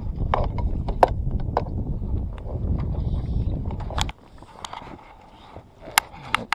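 Wind rumbling on the microphone over lapping water at a small inflatable fishing boat, with a few sharp clicks and knocks; the rumble stops abruptly about four seconds in.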